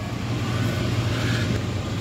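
A steady low mechanical hum with an even rushing noise over it, growing a little louder in the first half-second and then holding.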